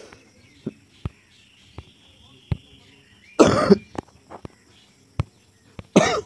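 A single cough, short and loud, about three and a half seconds in, with a few faint isolated clicks before and after it.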